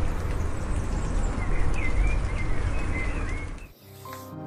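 Small birds chirping, several short calls in the middle, over a steady noisy wash with a heavy low rumble; the sound cuts off suddenly just before the end.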